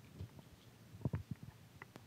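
A few faint, short thumps and clicks of a handheld microphone being handled as it is lowered and put down.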